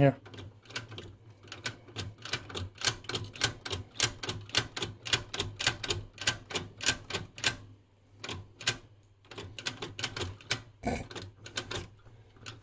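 The IF bandwidth switching mechanism of a 1961 Rohde & Schwarz ESM 300 valve receiver clicking as the bandwidth control is turned step by step: a run of sharp mechanical clicks, about three or four a second, with a short pause about two-thirds of the way in.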